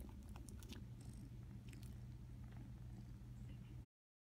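Siamese cat purring close up, a quiet, steady low rumble, with faint small clicks of a kitten nursing; it cuts off suddenly just before the end.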